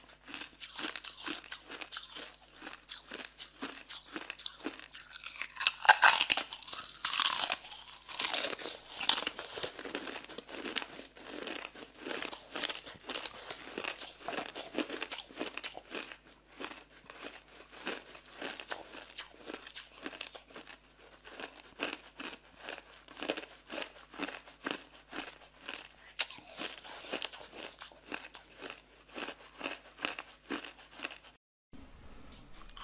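Hard ice being bitten and chewed close to the microphone: a loud run of cracking crunches about six seconds in, then many short, rapid crunches as the pieces are chewed.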